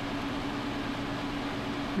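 A steady background hum holding one low tone over an even hiss, unchanging throughout, with no clear handling sounds from the beadwork.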